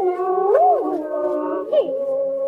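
Singing: a high voice sliding up and down between long held notes, over a steady lower held tone.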